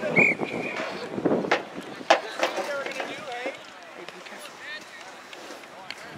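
Referee's whistle: one short blast about a quarter second in, stopping play at the ruck. Players' and spectators' shouts and voices follow, with a sharp knock about two seconds in.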